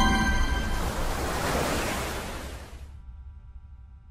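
Outro logo sting: a rushing whoosh laced with ringing held tones that is loudest at the start and fades away over about three seconds. A faint held chord lingers and then cuts off at the very end.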